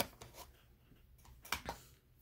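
A few light taps and knocks of craft supplies being handled and set down on a tabletop, with quiet stretches between them.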